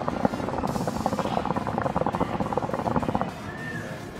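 Water in a Nargilem NPS Classic shisha bubbling rapidly as smoke is drawn through it, for about three seconds, then stopping.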